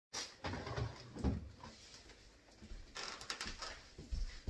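Household handling noises: a few low thumps in the first second or so, then a quick run of clicks and knocks about three seconds in, typical of a cupboard door being opened and things being moved.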